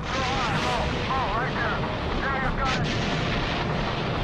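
Battle sound effects: a continuous low rumble of artillery fire, with a few sharp gunshot-like cracks a little past halfway, and a wavering, voice-like sound above it.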